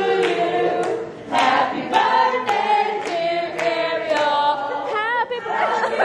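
Vocal music: several voices singing together over a steady beat of about two hits a second, with a wavering held note near the end.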